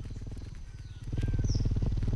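Booted racket-tail hummingbird's wings humming: a low buzz of fast, even beats that grows louder about a second in. A couple of brief, faint high chirps sound over it.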